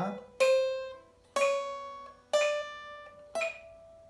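Small-bodied acoustic guitar playing a slow chromatic exercise: single picked notes, one a second at 60 beats per minute, each a little higher than the last and ringing out before the next.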